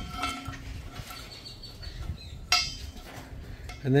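Steel hinge plates and bolts clinking against each other and the steel pipe as they are handled, with one sharp ringing metallic clink about two and a half seconds in.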